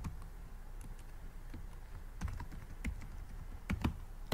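Computer keyboard keystrokes, faint and scattered, with a small cluster of taps about two to three seconds in and another just before the end, as a password is typed in.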